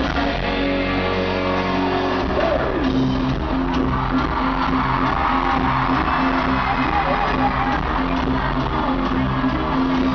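Live rock band playing amplified in a large hall, heard from within the crowd: electric guitars and drums with singing. Held chords give way, about two and a half seconds in, to a falling glide and then a fuller, steady beat.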